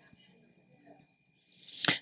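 A pause in a woman's miked talk: near silence for most of it, then a soft breath drawn in and the start of her next words near the end.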